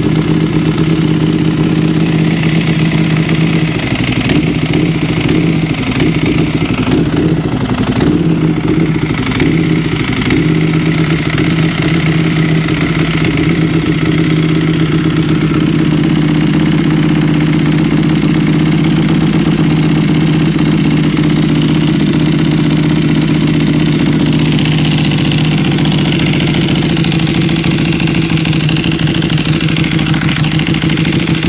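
Motorcycle engine idling steadily while it warms up, after years of standing unused; its note wavers slightly in the first ten seconds, then holds even.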